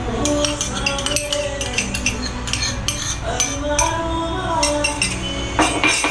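Steel spoon clinking rapidly against a small steel cup as ginger is scraped out of it into a steel pan, the clinks stopping about a second before the end. Background music plays throughout.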